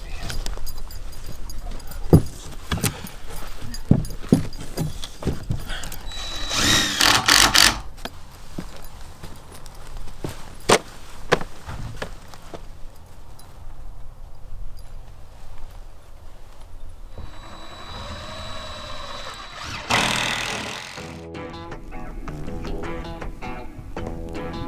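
Thuds and knocks of plywood box-blind panels being handled and fastened together, with two longer bursts of noise. Music comes in near the end.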